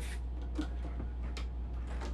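A few light clicks of metal golf clubheads knocking together in a bag as a wedge is drawn out, over a steady low hum.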